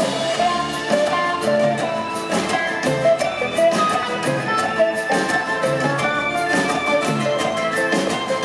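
Live band playing an instrumental passage: electric and acoustic guitars over upright bass and a drum kit keeping a steady beat.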